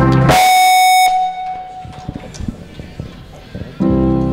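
Live band music breaks off, and a single bright, buzzy electronic note rings out loudly for under a second before fading away. The band's music comes back in near the end.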